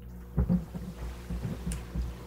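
Meeting-room tone in a pause between speakers: a steady low hum, with a few faint low thumps in the first second and a small click near the end.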